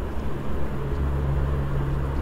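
Steady low background rumble with a faint hum, no other distinct sound.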